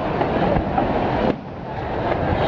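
Aerial fireworks going off in a dense, continuous crackle of small pops and bangs, dipping briefly about a second and a half in.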